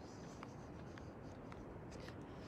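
Quiet outdoor ambience: a low, steady rumble with a few faint ticks scattered through it.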